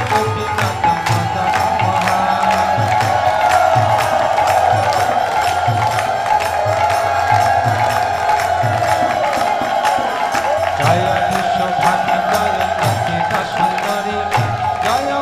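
Devotional kirtan music: group chanting over a harmonium, with a steady beat of sharp hand-cymbal strikes and a low drum pulsing underneath.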